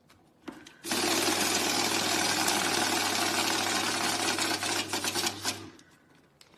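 CTMS banknote counting machine running as a stack of €50 notes is fed through it: a fast, even riffling of notes over a steady motor hum, starting about a second in and stopping shortly before the end. Faint clicks of notes being handled come just before it starts.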